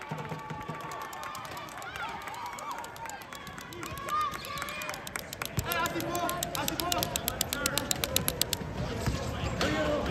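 Wheelchair basketball play on a hardwood gym floor: sports wheelchair tires squeaking, a basketball bouncing and scattered voices calling out. A fast, fine high ticking runs through most of it and stops near the end.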